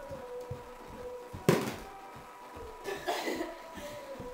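Feet thudding on a wooden floor during energetic dancing and jumping, with one loud landing thump about one and a half seconds in. A short breathy vocal burst comes about three seconds in.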